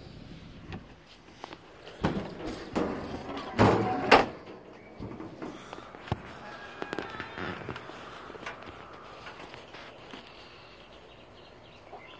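A few knocks and a clatter on the ice machine's metal cabinet two to four seconds in, the loudest about four seconds in: its bin door or panels being handled. After that only a low, steady background remains.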